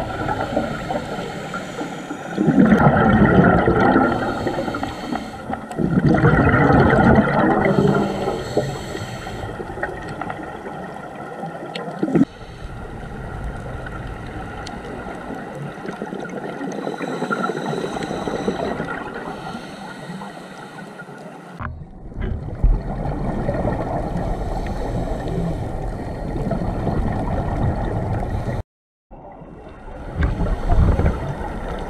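Underwater sound picked up through a camera housing: a scuba diver's exhaled bubbles gurgling and rumbling in bursts of about two seconds, over a steady wash of water noise. The sound drops out briefly near the end.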